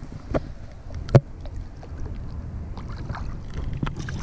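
Water lapping at the side of a boat hull, with wind on the microphone as a low rumble. A few light clicks and one sharp knock about a second in.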